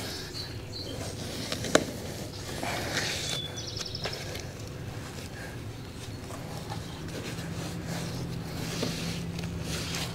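Faint handling sounds of hands pressing and squeezing tape onto a corrugated plastic drain-pipe tee, with one sharp click a bit under two seconds in, over a low steady hum.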